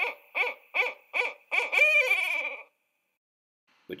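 Barred owl hooting: about five short, quick hoots followed by one longer hoot that drops in pitch at the end.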